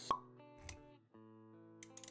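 Intro jingle for an animated logo: a sharp pop just after the start, then a softer low thump, over background music of held synth-like notes, with a few quick ticking clicks near the end.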